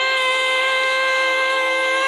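A woman's singing voice holding one long, steady note at full voice over a karaoke backing track.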